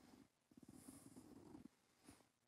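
Near silence: room tone, with a faint low rasping sound lasting about a second from about half a second in.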